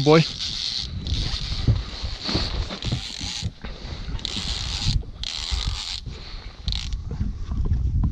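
Baitcasting reel's drag slipping and giving line in hissing bursts of one to two seconds as a hooked musky surges near the boat, over low wind rumble and knocks on the microphone.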